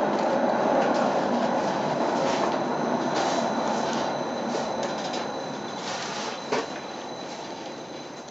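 Rail-guided cabin of the Via Balbi–Corso Dogali lift rolling along its tunnel track, a steady rumble with a faint high whine that fades gradually as the cabin slows into the station. A single sharp knock comes about six and a half seconds in.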